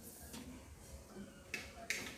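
Needle and thick yarn being worked by hand through jute burlap: faint rustling, with two short sharp scratches about a second and a half in and just before the end.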